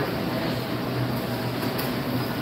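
Steady rumbling background noise with a constant low hum and no distinct events.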